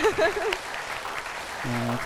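Studio audience applauding, with a woman's voice briefly over the clapping at the start.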